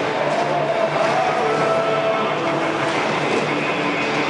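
Skateboard wheels rolling across an indoor bowl, a steady rumble as the skater carves the transition.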